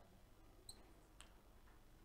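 Near silence: room tone, broken by a faint, short, high squeak a little before the first second and a faint tick about half a second later.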